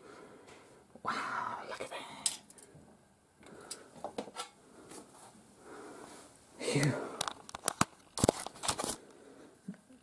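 Handling noise from a hatchet-smashed Blu-ray player: rustling and rattling of its broken plastic and metal casing as it is moved by hand. Near the end comes a quick run of sharp clicks and knocks.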